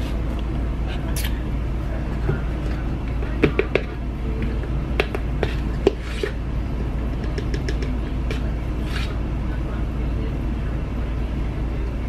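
Scattered light clicks and knocks of a plastic protein-powder tub and scoop being handled, over a steady low hum.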